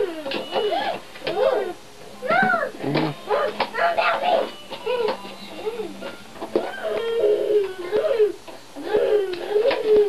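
Young children babbling and vocalizing without clear words, their high voices rising and falling in pitch in short phrases with brief pauses.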